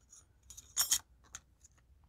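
Light clicks and clinks of small spare rotary-cutter blades being handled in their packaging, the loudest cluster about half a second to a second in.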